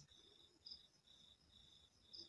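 Near silence with a faint, high-pitched insect chirping in the background, evenly paced at about three chirps a second.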